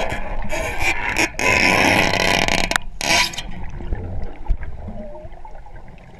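Water sloshing and rushing over a submerged camera's microphone: a loud, hissy wash for the first three seconds or so, broken by a couple of brief dropouts, then duller and quieter.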